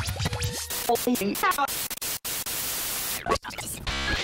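Outro music with a hiss of static-like noise and short scratchy, broken sounds, cutting out abruptly twice.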